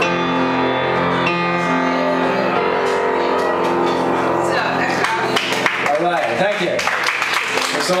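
Upright piano letting its final chords ring out, then audience applause with a few voices from about five seconds in.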